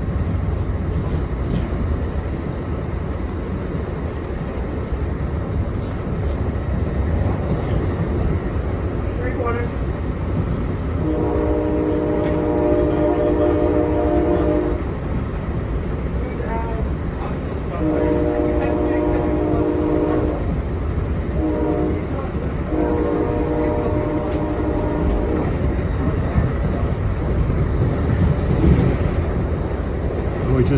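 A P40DC locomotive's Nathan K5LA five-chime air horn sounds long, long, short, long, the standard warning for a grade crossing ahead, heard from inside a passenger coach. Underneath is the steady rumble of the train running at speed.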